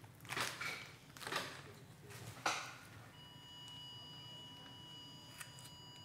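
Angiography X-ray system's steady electronic exposure tone starting about three seconds in, held as a contrast acquisition run is recorded. Before it come three short bursts of noise.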